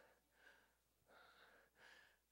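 Near silence with a few faint breaths close to a handheld microphone.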